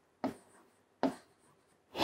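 Felt-tip marker writing on a whiteboard: two brief strokes of the pen on the board, a little under a second apart.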